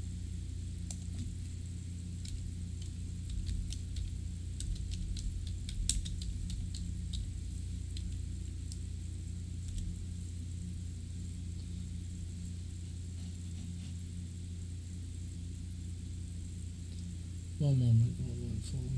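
Low, steady electrical hum with faint, irregular clicks of typing on a computer keyboard, mostly in the first half.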